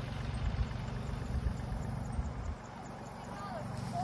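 Wind buffeting a phone microphone in a low, uneven rumble that eases off about two and a half seconds in.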